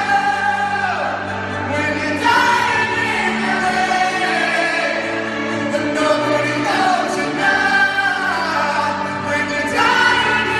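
Live arena concert music recorded on a phone from the stands: a slow song with a voice singing long held notes over piano, and many voices singing with it.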